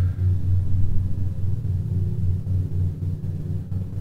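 An engine running nearby, heard muffled from indoors: a steady, low drone that pulses several times a second. It is either an unmuffled car or a lawnmower.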